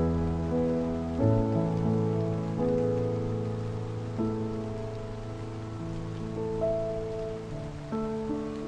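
Slow, calm piano improvisation on a sampled grand piano (Spitfire LABS Autograph Grand), soft sustained chords over held low bass notes, changing every second or two. A steady rain ambience is mixed in underneath.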